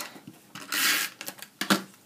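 Snail tape-runner adhesive rolled along the back of a cardstock panel: one short rasping stroke about half a second in, then a few light clicks and taps as the paper and the dispenser are handled.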